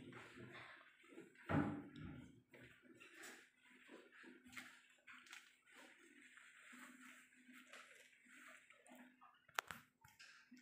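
Quiet room with faint shuffling handling noises, a faint steady low hum in the second half, and one sharp tap near the end.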